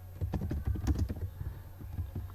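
Typing on a computer keyboard: a quick run of keystrokes that thins to a few spaced taps in the second half.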